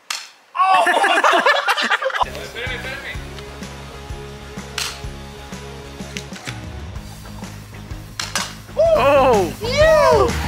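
A single BB pistol shot, a sharp crack, followed by a burst of loud shouting. Then background music with a steady beat comes in about two seconds in, with more voices over it near the end.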